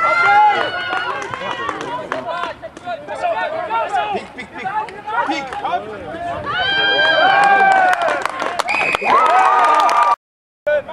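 Several voices shouting and calling out together during a rugby ruck near the try line, the loudest long shouts coming about seven seconds in and again near the end.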